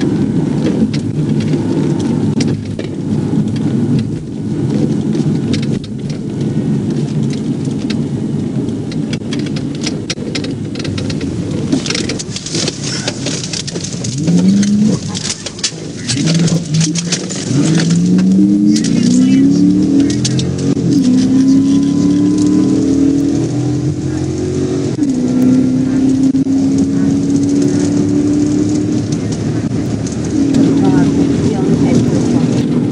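Police car's engine and road noise in the cabin during a pursuit, at first steady, then from about halfway the engine revving up under hard acceleration, its pitch climbing in several steps as it shifts up, with one drop near the end before it climbs again.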